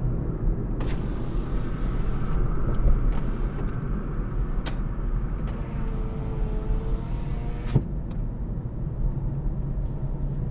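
Car cabin noise while driving: a steady low rumble of engine and tyres on the road. A higher hiss comes in twice over it.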